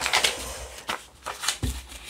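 Small word pieces rustling and clicking inside a cloth drawstring bag as it is handled and shaken, with a soft thump late on.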